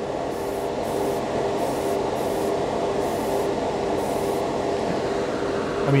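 Short hissing bursts from a Harder & Steenbeck Evolution airbrush spraying lacquer, about seven in the first four seconds, over the steady hum and rush of a spray booth's extraction fan.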